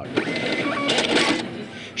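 Lottery terminal's ticket printer running as it prints Powerball tickets: a steady mechanical whir, a little louder in the first second and a half.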